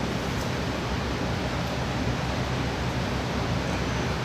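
Steady background noise with a low hum underneath, and no distinct events.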